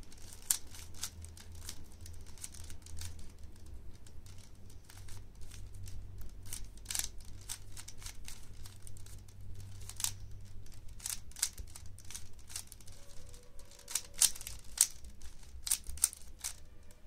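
Plastic 3x3 Rubik's cube being turned by hand: a quick, irregular run of clicks and clacks as its layers are twisted, with a few sharper clacks near the end.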